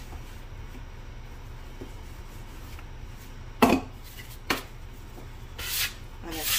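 Hands pressing and shaping pie dough on a floured wooden board, with two sharp taps about a second apart midway. Near the end a plastic bench scraper starts scraping flour across the board.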